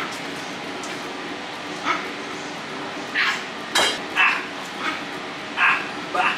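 A small dog yipping in short, high yelps about six times, over a steady background hiss. One sharp click comes just before the yelps' midpoint.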